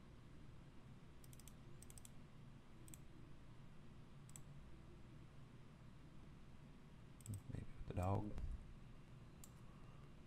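Computer mouse buttons clicking a few times, some in quick double or triple clicks, over a low background hum. A short voiced sound comes about eight seconds in.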